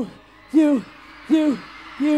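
Song outro in which a voice repeats a short falling 'you' note about every three-quarters of a second over a quiet backing.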